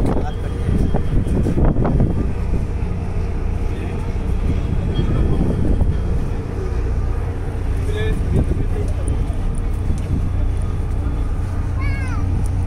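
Steady low drone of a ferry's engines on the open deck, with wind on the microphone.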